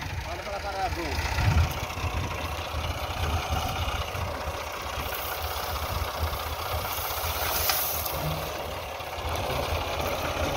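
Massey Ferguson 260 tractor's diesel engine idling steadily.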